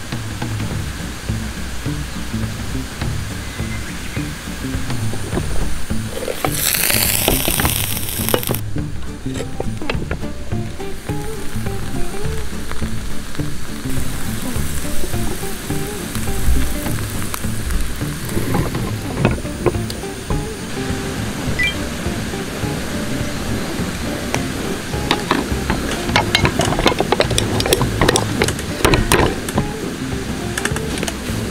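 Background music, with food sizzling underneath as grated potato fries in a hot sandwich maker on a gas burner. There is a brief rushing noise about seven seconds in and a run of light clicks near the end.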